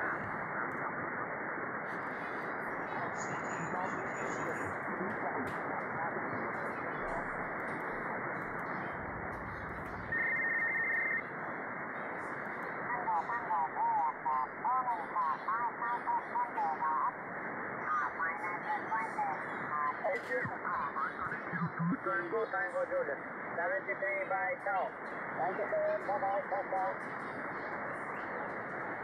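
Shortwave radio receiver hiss from an RTL-SDR clone dongle tuned across the 40-metre amateur band, with a brief steady whistle about ten seconds in. After that, faint single-sideband voices of ham stations fade in and out through the hiss.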